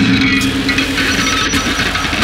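Harsh noise music: a loud, unbroken wall of distorted noise with a low droning tone that fades just after the start and brief high squealing tones scattered through it.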